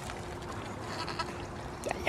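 A goat bleats near the end, a short call that rises in pitch, over a steady low background hum.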